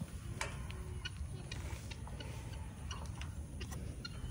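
Faint, irregular scratching clicks from fingers scratching a horse's coat, over a low steady rumble.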